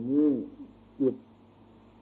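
A Thai monk giving a sermon in a slow, measured voice: one drawn-out syllable that rises and falls in pitch, then a short word about a second in, followed by a pause with only faint recording hiss. The sound is thin and band-limited, like an old recording.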